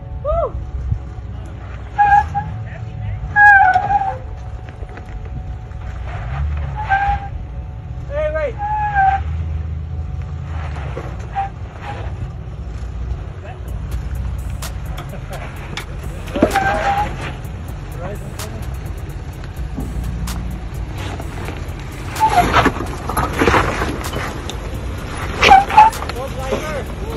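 Low, steady engine rumble of a Toyota Land Cruiser 80-series crawling slowly down stepped rock ledges. People's voices call out now and then over it, loudest a few seconds in and near the end.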